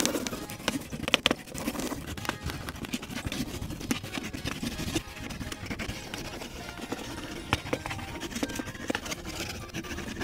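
Wax crayon rubbed quickly back and forth on paper over a clipboard, a continuous scratchy scribbling made of many short strokes, with music playing underneath.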